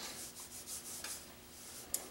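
Felt-tip Crayola marker scratching across drawing paper in a run of short, quick strokes, faint, with a small click near the end.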